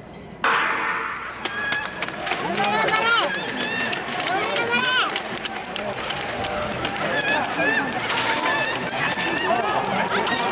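Starting gun for a women's 100 m hurdles race fires sharply about half a second in. Spectators then shout and cheer on the runners through the rest of the race.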